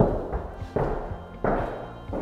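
Three heavy footsteps on a bare floor in an empty, unfurnished room, about two-thirds of a second apart, each ringing briefly in the room, with faint music underneath.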